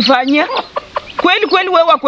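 A woman speaking in a raised voice, holding some sounds for about half a second, with a short break in the middle.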